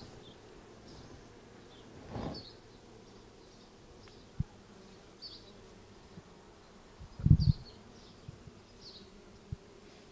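Honey bees on a comb frame lifted out of a mating nuc, giving a faint steady buzz. A dull thump comes about seven seconds in, the loudest sound, with a couple of short sharp clicks around it.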